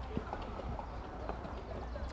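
Racehorses walking, their hooves clopping softly and unevenly on a dirt track, over a low steady rumble.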